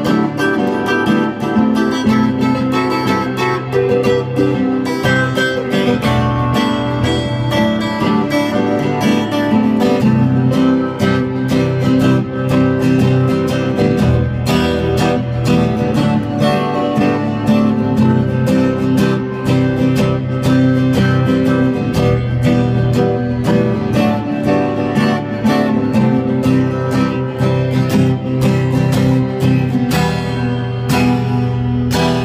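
Acoustic guitar strummed in a steady rhythm, in an instrumental passage of a song, with looped guitar parts layered together.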